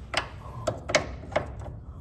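Hand tools clicking against metal as a socket wrench is picked up and fitted onto a bolt: four sharp, irregular clicks.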